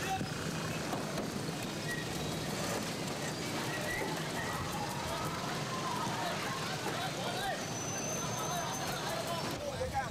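Street crowd: many voices talking and calling at once over a steady din of traffic.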